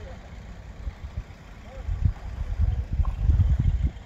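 Wind buffeting the microphone: a gusty low rumble that grows stronger about halfway in, with faint distant voices.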